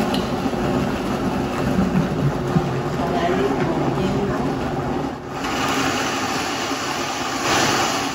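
Countertop blender motor running loud and steady, grinding soaked stale corn tortillas into a coarse meal while the tamper pushes them down onto the blades. The sound dips briefly about five seconds in, then runs on.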